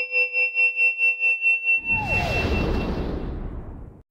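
Electronic logo sting: a synthesized tone pulsing rapidly, about four or five beats a second, swells in loudness. Just under two seconds in it gives way to a deep whoosh with a falling pitch sweep, which dies away and cuts off near the end.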